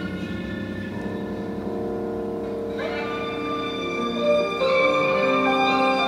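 Live violin and grand piano playing an instrumental passage with sustained notes; the violin slides up into a melody about three seconds in, and the music grows louder near the end.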